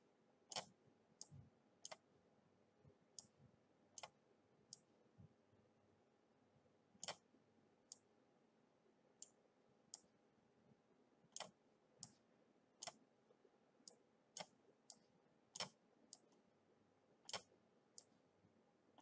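Faint, irregular computer mouse clicks, some in quick pairs, scattered roughly one a second, as icons are dragged and dropped on screen; otherwise near silence.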